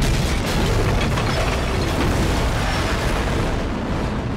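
Tank-like Batmobile crashing across a shingled roof: a loud, unbroken rumble and crunching as the roof shingles are torn up under its wheels.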